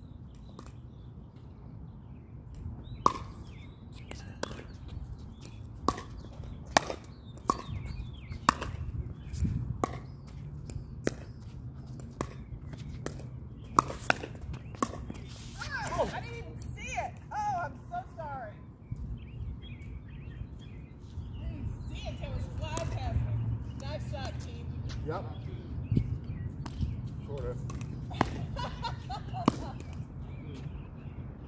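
Pickleball rally: paddles striking the hollow plastic ball with sharp pocks, about one a second through the first half and scattered ones later.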